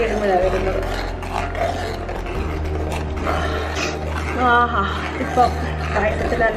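A person's voice over background music, with a steady low hum underneath.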